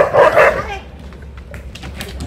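Alaskan Malamute barking at another malamute: one loud, gruff bark in two quick pulses during the first half-second, then quieter.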